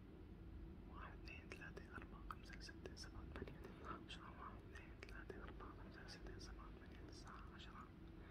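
Faint whispering under the breath with small mouth clicks, starting about a second in.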